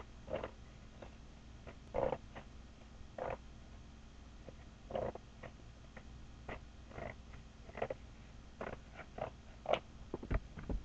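Paper shopping bag rustling and crinkling in short, irregular bursts as it is handled and pulled open.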